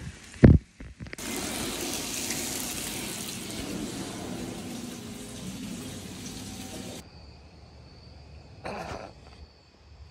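Kitchen tap running water into a sink: a steady rushing hiss that cuts off suddenly about seven seconds in. A sharp knock comes just before it, about half a second in.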